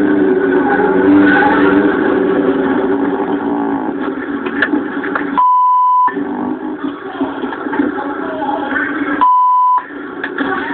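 Police dashcam audio played through a television: a vehicle engine running steadily, interrupted twice by a single-pitch censor bleep, each lasting under a second, about five and a half seconds in and again near the end.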